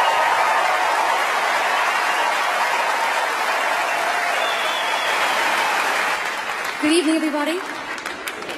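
Audience applauding, steady at first and dying down about six seconds in, with a brief voice near the end.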